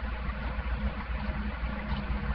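Faint, irregular tacky sounds of fingers touching and pulling at the sticky surface of a silicone prosthetic, over a steady hiss and low hum.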